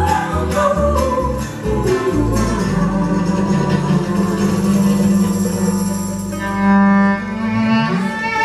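Live bluegrass string band playing, with fiddle, upright bass, mandolin and acoustic guitar. A woman's singing is heard over rhythmic strumming in the first two seconds, then a long held low note carries through the middle, and a higher melody line comes in near the end.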